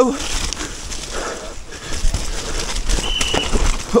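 Mountain bike descending a muddy trail: the tyres running through wet mud and the bike rattling over roots, with a low rumble and scattered clicks. About three seconds in, a brief steady high-pitched whistle sounds.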